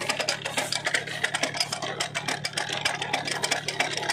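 Tractor engine running steadily: a low hum under a fast, uneven clatter.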